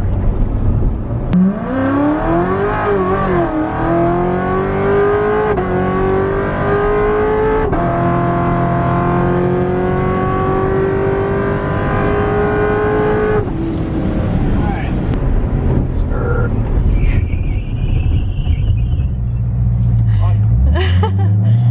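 Supercharged 6.2-litre V8 of a Hennessey HPE750 C7 Corvette Grand Sport pulling hard under throttle, heard from inside the cabin: the engine note rises in pitch from about a second in, with brief dips at upshifts, then cuts off sharply as the driver lifts about 13 seconds in.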